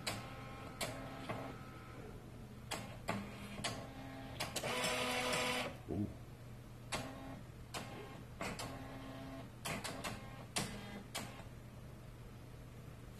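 HP LaserJet M2727nf laser printer going through its start-up cycle. A series of sharp clicks and clunks is interspersed with short mechanical hums, and a denser whirring run of about a second comes roughly four and a half seconds in.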